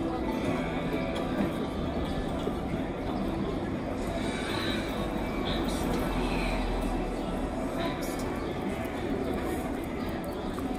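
Busy street ambience: background chatter and music, with footsteps of passers-by on the pavement.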